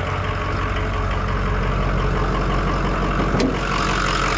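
Ford 6.0 Power Stroke V8 turbo diesel idling steadily, with a single short click a little over three seconds in.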